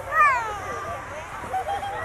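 A young child's high-pitched squeal, a single cry that slides down in pitch, followed by quieter, shorter vocal sounds.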